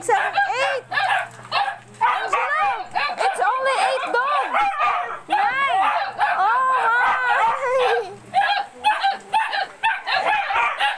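Dogs whining and yipping, one high rising-and-falling cry after another with only short gaps.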